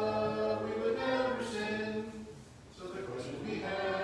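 A group of voices singing together in unison, holding long steady notes, with a brief pause a little past two seconds before the voices come in again.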